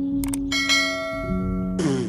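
Notification-bell sound effect: a couple of quick mouse clicks, then a bright bell chime that rings out and fades, over a held note of background music. A short whoosh comes near the end.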